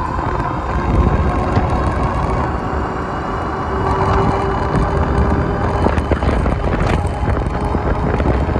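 Wind rushing over the microphone of a HAOQI Rhino Scrambler electric fat-tire bike accelerating on throttle alone, no pedaling, toward about 29 mph. A faint steady whine runs through the middle of it.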